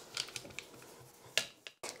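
A few light clicks and taps from a small dough roller working against a tart tin and being set down, the loudest about one and a half seconds in.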